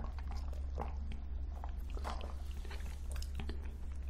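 Close-miked mouth sounds: sipping a drink through a straw, then chewing and swallowing, with small wet clicks over a steady low hum.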